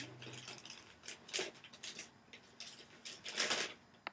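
A paper bag being pulled open and handled, with scattered crinkling and rustling and the loudest rustle about three and a half seconds in.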